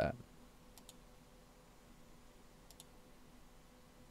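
Two computer mouse clicks about two seconds apart, each a quick press and release, over a faint steady hum.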